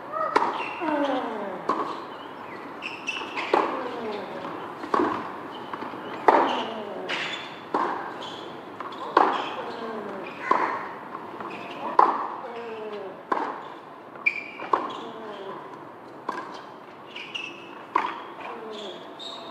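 Tennis rally on a hard court: a ball is struck by rackets back and forth, about one hit every second and a half, from the serve on through the point. Many hits are followed by a short falling grunt from the hitting player.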